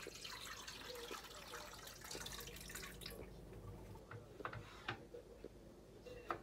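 Tap water running and splashing into a stainless-steel pot of eggs for about three seconds, then a few light knocks.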